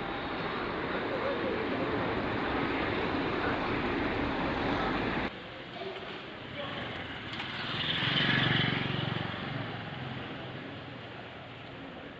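Street noise with people's voices, cut off abruptly about five seconds in. Then a motorcycle or scooter engine approaches, passes close at its loudest around eight to nine seconds in, and fades away.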